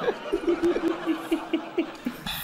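A person giggling in a quick run of short laughs held on one pitch, over a light background of studio laughter.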